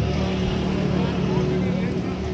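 A steady low engine hum with faint talk over it.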